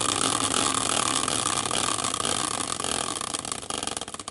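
A caster wheel on a metal bracket, spun by hand as a prize wheel, whirring steadily on its axle, then breaking into separate ticks near the end as it slows down.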